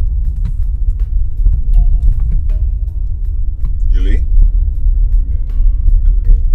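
Steady low rumble of a car on the move, heard from inside the cabin, with faint background music. A short voice sound comes about four seconds in.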